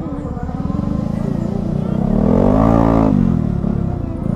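Motorcycle engine running with a low, pulsing note, then its pitch rising and falling as it revs up about two seconds in and drops back.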